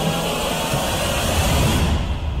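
Intro sound effect under a glitch logo animation: a loud, dense rumbling hiss that builds slightly and cuts off near the end.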